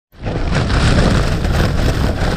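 Strong wind, around 40 mph, buffeting a Jack Wolfskin backpacking tent, heard from inside: a loud, steady rushing noise with a deep rumble underneath.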